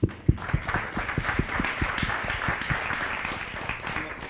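Theatre audience applauding, a sudden start of many hands clapping that thins out toward the end.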